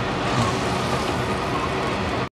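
Braising sauce boiling in a wok of tofu and roast pork belly over a high gas flame: a steady bubbling hiss.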